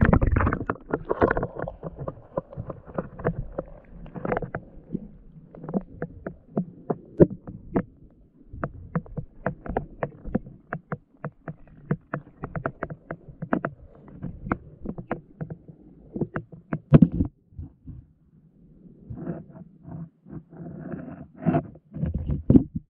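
Muffled underwater sound picked up by a GoPro Hero 7's own microphone: a splash-like hit as it goes under, then many irregular knocks and thumps as the camera bumps against the rocky, weedy bottom, with a quieter stretch a few seconds before the end.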